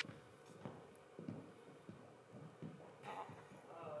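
Faint, irregular soft thuds and shuffles of a person moving on a stage floor, close to room tone, with a brief voiced "oh" near the end.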